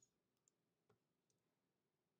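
Near silence with three faint, short clicks about half a second apart: computer mouse clicks while text is selected and the cursor is moved in a document.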